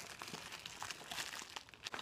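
Faint, irregular crinkling and rustling of plastic wrapping as hands go through the contents of a pencil case.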